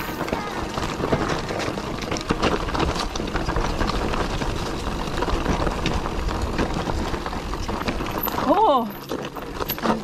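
Mountain bike riding down a rocky singletrail: tyres crunching over loose stones and the bike rattling and clattering with many small knocks, with a low rumble of wind on the camera microphone. The noise eases off near the end.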